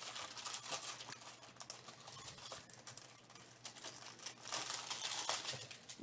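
Clear plastic shrink-wrap crinkling as it is handled and pulled off a trading-card box by hand, a faint run of small crackles that gets a little busier near the end.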